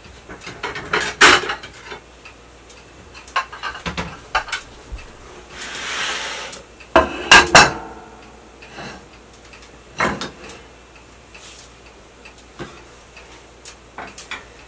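Dinner plates and kitchenware clinking and clattering as plates are taken out and set down on the counter, with a short scrape about six seconds in followed by the loudest clatter, a ringing double knock.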